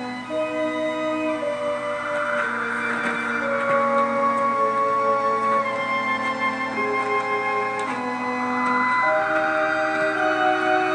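Slow orchestral film score of long held notes that move to new pitches every second or so, swelling twice. It plays from a television's speakers and is picked up by a camera in the room.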